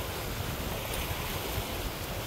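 Steady rushing wind and water noise aboard a sailboat under way at about seven and a half to eight knots: wind across the microphone and water moving along the hull.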